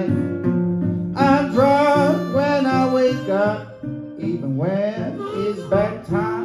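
Live acoustic blues played on a resonator guitar and a harmonica: the guitar picks a steady pattern in the low register while the harmonica and voice carry bending melody notes over it, with one long rising slide about two-thirds of the way through.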